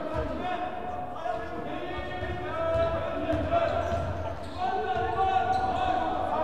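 A basketball bouncing on a hardwood gym floor during a game, with several voices shouting and calling over it; the calling gets louder about halfway through.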